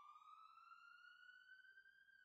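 Near silence, with one faint tone gliding slowly upward in pitch.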